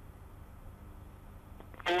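Faint steady low hum and hiss, with no engine sound yet. Near the end a voice on the launch-control loop begins calling the launch command.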